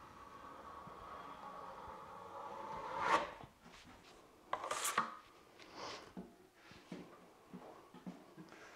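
Steel drywall trowel drawn over wet joint compound on a butt joint, a faint steady scrape that builds for about three seconds. Then a few short scrapes and clicks as the trowel is worked against the hawk.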